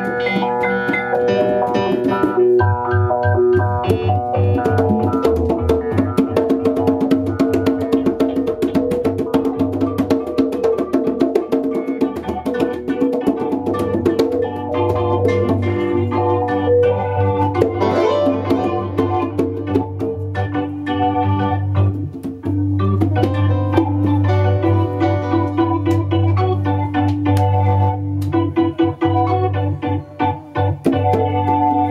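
Two synthesizers playing organ-like held chords and a bass line, with congas hand-drummed throughout in a live instrumental jam.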